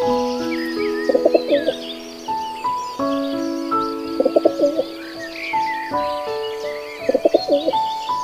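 Pigeons cooing in three short wavering bursts about three seconds apart, over background music, with small birds chirping.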